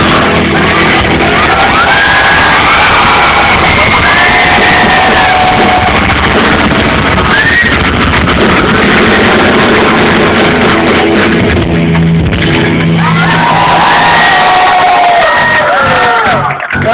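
Rock band playing loud live music, drums among the instruments, with shouts from the crowd over it.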